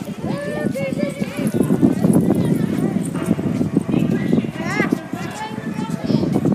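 Many children's footsteps on a concrete walkway close to a ground-level microphone, a dense run of quick footfalls, with children's voices calling out over them.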